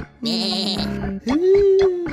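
A cartoon character's voice bleating like a ram: a wavering, rasping baa of about a second, then a long steady held note, over background music with a ticking beat.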